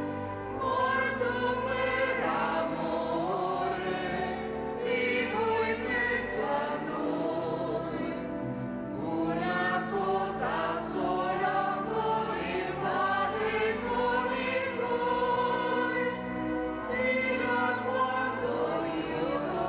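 A choir singing a slow hymn over steady, held low notes, sung while Communion is given.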